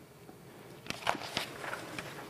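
Paper sermon notes handled on a wooden pulpit: a few soft taps and rustles, starting about a second in.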